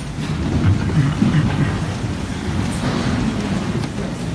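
Muffled low rumbling and shuffling noise as people move about a room, with no clear voices.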